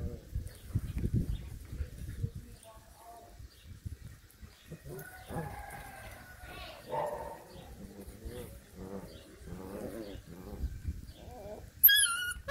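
Puppies play-fighting, with scattered short growls and whines and a sharp, high yelp right at the end.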